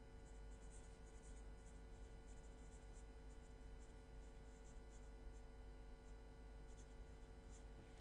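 Pen writing on paper: faint, quick scratching strokes in irregular runs, stopping near the end.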